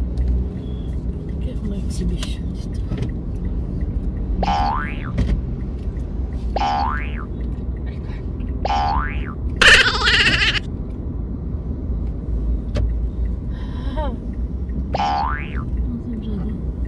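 Cartoon 'boing' sound effects: four quick upward-gliding twangs spread through the clip, with a loud hissing burst about ten seconds in that is the loudest moment, over a steady low rumble.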